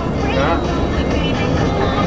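Steady road and engine rumble inside a moving car's cabin, with brief voices over it.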